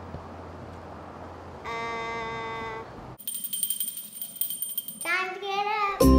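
A child's voice holds one sung note for about a second. It is followed by a bright high ringing chime with fast fine ticks lasting about two seconds, and near the end a child's voice slides up and down in pitch.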